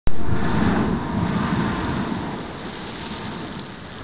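Rush of sea water and air from a natural geyser (a sea blowhole) erupting: a loud rushing noise that begins suddenly and fades over a few seconds as the spray column rises.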